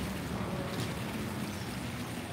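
Steady, even rush of water from a pond's rock waterfall filter, with no distinct events.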